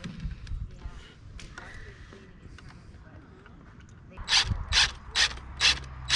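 Ratchet wrench clicking in short, even strokes, about two a second, from about four seconds in, as a bolt through wooden deck framing is tightened by hand. Before that there are only faint clicks of handling.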